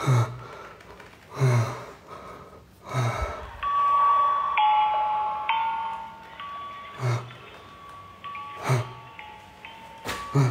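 A run of steady chime-like tones, held and stepping between a few pitches, starting a few seconds in. Under it are short low sounds that come about every one and a half seconds.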